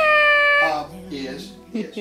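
A pug gives one long, high-pitched yowl whose pitch rises and then holds before it stops under a second in.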